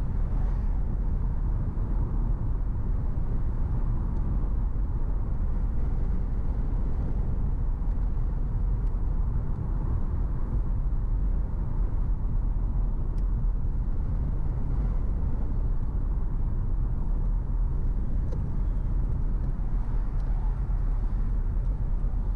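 A car driving at steady speed: a constant low rumble of road and engine noise.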